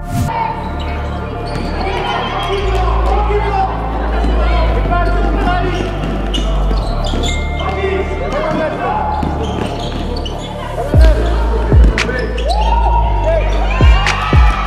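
Indoor basketball game: a basketball bouncing on a gym floor, with several loud bounces near the end, amid shoes squeaking on the court and players' voices, over a steady background music track.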